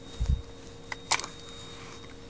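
Handling noise from a bare rifle receiver being turned over in the hands: a dull thump near the start, then two small clicks about a second in, over a faint steady hum.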